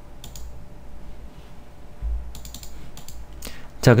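Computer keyboard keys clicking: a few clicks about a third of a second in, then a quicker run of clicks between two and three and a half seconds in, over a faint low hum.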